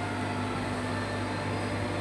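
Steady low mechanical hum with a faint hiss, with no distinct events.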